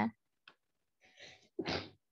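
A woman's short sneeze, preceded by a quick breath in.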